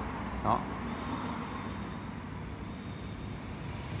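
A steady, low background noise with no distinct events, after one short spoken word.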